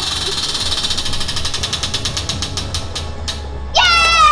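Spinning prize wheel, its pointer clicking rapidly against the pegs and slowing until the wheel comes to a stop. A girl screams excitedly near the end.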